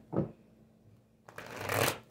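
A deck of tarot cards being shuffled: a short rushing riffle that builds and stops near the end, after a brief thump just after the start.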